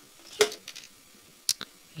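A few small clicks from plastic model-kit parts being handled: one about half a second in, and a sharp thin one with a fainter follow-up about a second and a half in, over quiet room tone.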